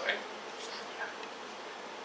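Steady buzzing background hum of the room, an even drone with no speech, with a brief noise right at the start and a faint click about a second in.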